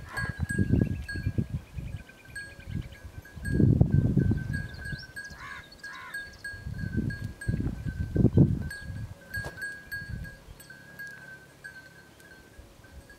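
Sheep and goats bleating, two short bleats about five and a half and six seconds in, over a steady high-pitched whine. Irregular low rumbles swell and fade several times and are loudest about four and eight seconds in.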